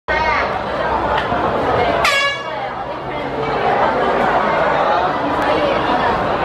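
A short blast of a starter's horn about two seconds in starts the girls' 4x100 m relay, over steady crowd chatter.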